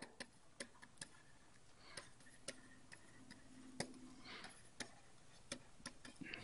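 Faint, irregular clicks and taps of a stylus on a pen tablet as words are handwritten, about a dozen scattered through.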